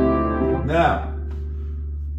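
Upright piano chord, a B minor seven flat five with a C major triad stacked on top, sustaining and fading away within the first second.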